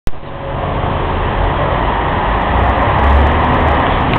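Steady roar of nearby road traffic with a low rumble that swells and fades, after a single click at the very start.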